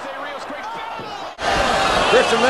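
Televised wrestling audio: a quieter stretch of crowd noise, then an abrupt cut about a second and a half in to louder commentary over the crowd, with thuds of wrestlers hitting the ring canvas.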